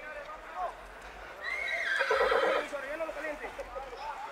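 A horse whinnies once, loud and quavering, for about a second starting around a second and a half in.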